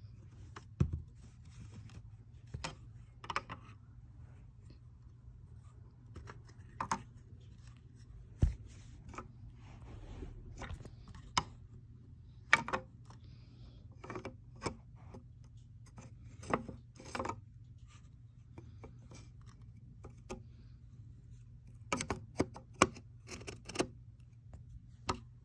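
Wooden toy train track pieces and a red plastic bridge support being handled and fitted together: irregular light clacks, taps and scrapes of wood on plastic, with a quick cluster of knocks near the end. A low steady hum runs underneath.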